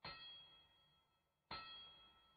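Two faint metallic clangs, each ringing briefly and dying away within about half a second, the second coming about one and a half seconds after the first.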